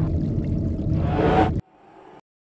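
Logo-intro sound effect: the rumbling tail of a deep boom fades, a tone swells near the end, and it all cuts off abruptly about a second and a half in, leaving only a faint trace.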